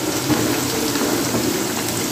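Sliced onions frying in a deep layer of hot oil: a steady, even sizzle with the crackle of bubbling oil, the onions still pale at the start of browning.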